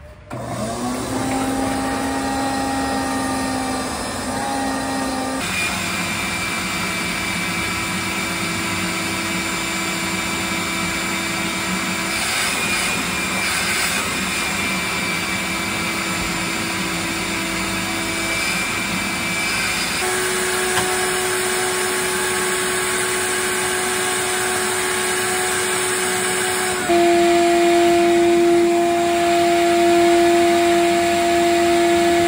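Wet/dry shop vacuum running steadily while it sucks dust out of a car interior, with a high whine. Its pitch steps up or down a few times, and it gets louder near the end.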